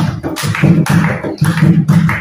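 Dholak played by hand in a fast, steady rhythm of deep strokes, with hand claps keeping time.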